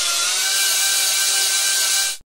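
A steady, even whirring noise with a high hiss and a few steady tones over it, like a small machine running. It starts and stops abruptly, as if cut in.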